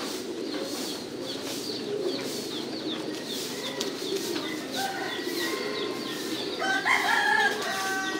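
A loft of caged pigeons cooing as a continuous low murmur, with short high chirps repeating over it. A louder, drawn-out bird call rises near the end and is the loudest sound.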